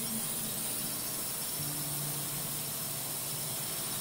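Steady, hissing whir of a quadcopter drone's spinning rotors, an animation sound effect, with a faint low hum joining about one and a half seconds in.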